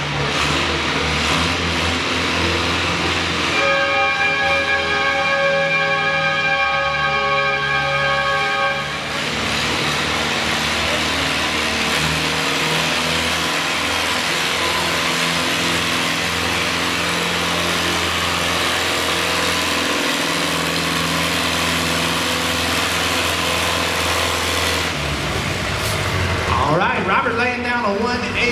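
Farmall M tractor's four-cylinder engine pulling hard under steady load as it drags a pulling sled. About four seconds in, a high steady whine joins it for about five seconds. The engine note drops about 25 seconds in as the pull ends.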